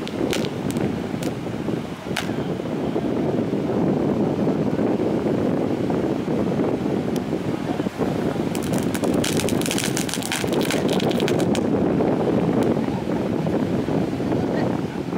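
Small firecrackers going off: a few sharp pops in the first couple of seconds, then a rapid run of crackling about eight and a half seconds in that lasts some three seconds. Beneath them runs a steady noise of surf and wind.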